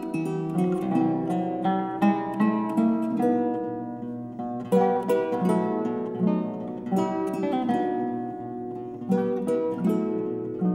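Two Russian seven-string guitars playing a classical duet: a plucked melody over a moving accompaniment, with several sharper accented chords.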